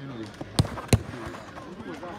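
Two sharp thuds of a football being struck, about a third of a second apart, the second louder, with voices in the background.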